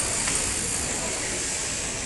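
Steady hiss of a shearing board at work: electric shearing handpieces running on the stands, with general hall noise and no single event standing out.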